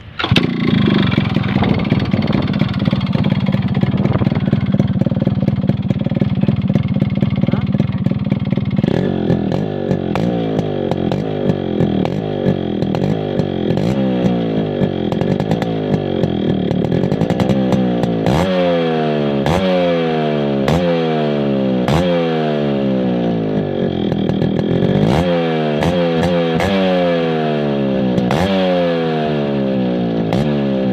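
Yamaha RX100's two-stroke single-cylinder engine running at a steady idle, then revved over and over from about nine seconds in. From about eighteen seconds the throttle blips come quicker, each one rising in pitch and dropping back. The exhaust note is heard close to the silencer.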